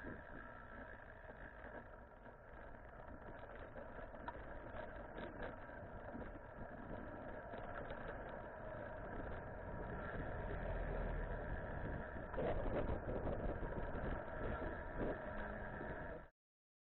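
Steady road and traffic noise heard from a moving bicycle, with motor-vehicle engines running, growing louder over the last few seconds.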